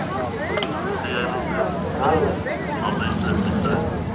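Several people talking at once, with a steady low rumble underneath from the distant B-52 Stratofortress's jet engines as it flies away.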